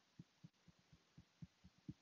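Faint, soft fingertip taps on the face below the lips and on the chin, about four a second, in EFT tapping.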